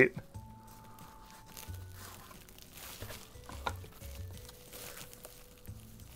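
Soft background music, with faint rustling and a small click as a deck of playing cards is slid out of its cardboard tuck box and handled.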